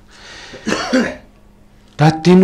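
A man coughs once, a short rough burst about two-thirds of a second in, after a breathy intake of air.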